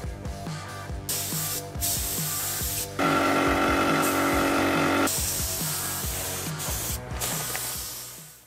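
Compressed-air paint spray gun hissing in bursts, loudest for about two seconds in the middle, over background music with a steady beat.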